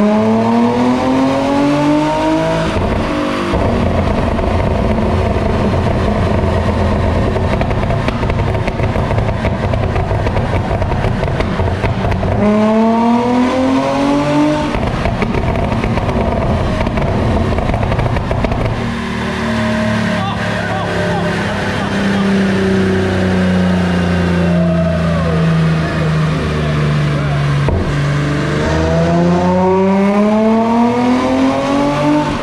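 Nissan 350Z's 3.5-litre V6 run hard on a chassis dyno: the engine note climbs in pitch through a pull, runs loud and sustained at high revs, then winds down slowly. Its pitch climbs again near the end.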